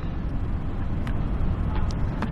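Steady low rumble of room noise with no speech, and a few faint clicks about a second in and near the end.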